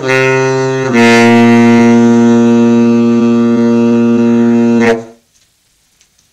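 Tenor saxophone playing the closing notes of the tune: a short note, then a long low final note held for about four seconds that stops about five seconds in.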